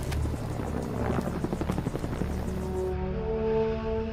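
Helicopter rotors chopping in a fast pulsing beat over a low rumble, cut off about three seconds in by orchestral film score with long held notes.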